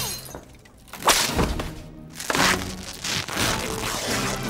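A button bursting off tight trousers, with sudden crashes about a second in and again a little after two seconds in. These are comedy film sound effects over music.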